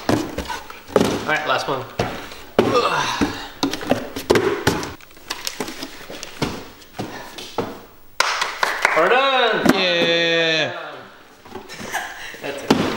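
Empty cardboard shipping boxes being handled and set down on a table, giving a run of hollow knocks and thunks. Voices come and go, with one long drawn-out vocal sound from about eight seconds in.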